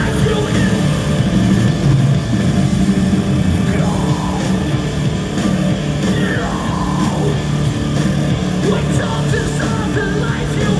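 Metalcore band playing live at full volume: electric guitars, bass and drums, loud and continuous, heard from the crowd in a large arena.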